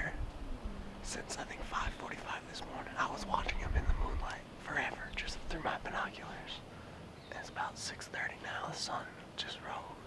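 A man whispering in short phrases.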